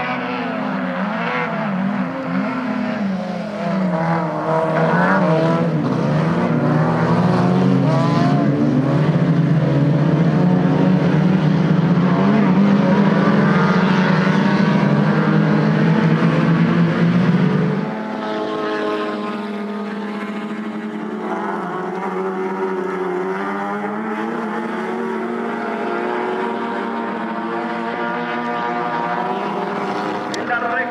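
Several Fiat race car engines running hard at full throttle, their pitches rising and falling over one another. About eighteen seconds in the sound drops suddenly to a lower level and carries on at a steadier pitch.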